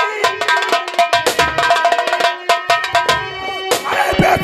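Live folk-theatre stage music: rapid drumming over steady held melodic notes, with a sharp hit near the end.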